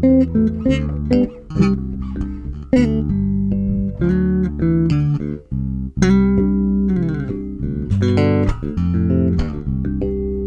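Fan-fret five-string Dingwall Combustion electric bass, recorded direct, playing an instrumental passage with no vocals: a run of quick tapped and plucked notes over held chords.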